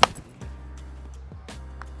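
A baseball bat cracking against a ball once, sharp and loud, with a much fainter knock about a second and a half later, over background music.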